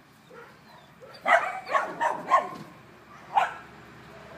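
Dog barking: four sharp barks in quick succession a little over a second in, then a single bark near the end.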